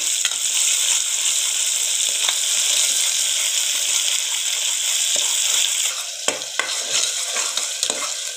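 Onions and ginger-garlic paste sizzling in hot mustard oil in a pressure cooker while being stirred with a spatula. The sizzle eases about six seconds in, and a few sharp taps and scrapes of the spatula on the pot follow.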